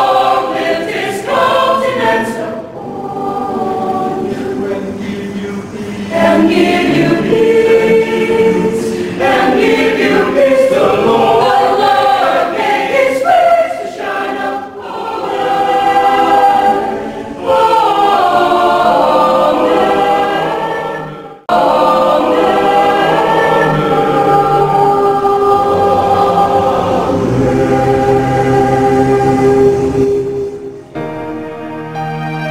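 Mixed choir of women and men singing together in held chords, with a brief break in the sound a little over two-thirds of the way through.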